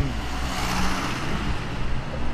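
A car driving past on the street, its noise swelling to a peak about a second in and then fading.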